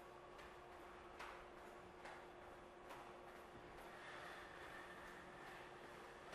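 Near silence, with faint soft landings of jumping jacks on a wooden floor, a little more than one a second, over a steady faint hum.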